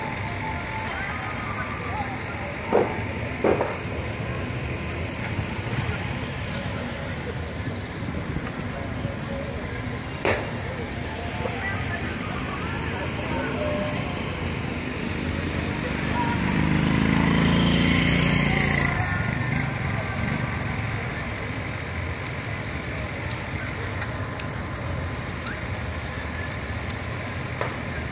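Night-time city ambience: a steady hum of distant traffic, with a few sharp pops of distant firecrackers about three seconds in, again half a second later, and around ten seconds in. A vehicle passes, swelling and fading about sixteen to twenty seconds in.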